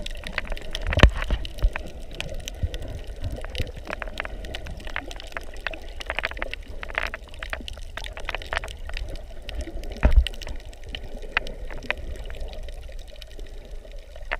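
Water heard through a camera held underwater: steady gurgling and sloshing with a low rumble, scattered sharp clicks, and louder low thumps about a second in and again about ten seconds in.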